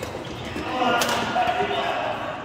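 A badminton racket strikes a shuttlecock once with a sharp crack about a second in, among players' voices.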